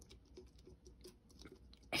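Faint, irregular light clicks and rustles of fingers handling a clear plastic ornament ball.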